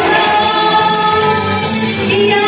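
Several women singing together into microphones over an amplified karaoke backing track, leading a sing-along.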